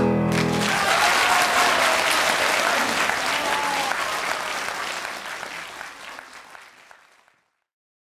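The song's last held notes die away, and an audience applauds. The clapping fades out after about seven seconds.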